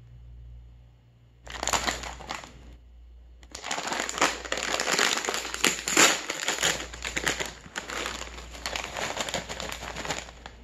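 A Lay's potato chip bag crinkling as it is handled and then pulled open down the middle. There is a short burst of crinkling about a second and a half in, a pause, then dense crackling and tearing with sharp loud peaks from about three and a half seconds on.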